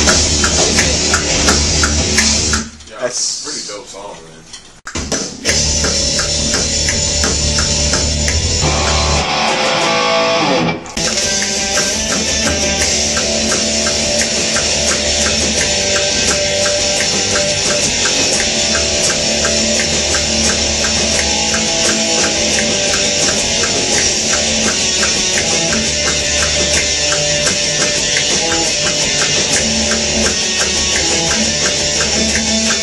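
Heavy metal music: electric guitar riffing over a steady drum beat. It dips away briefly about three seconds in and stops for a moment around eleven seconds before carrying on.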